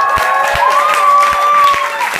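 Audience cheering at the close of a stage show: several voices hold long 'woo' calls while scattered clapping starts, and the clapping swells into full applause near the end.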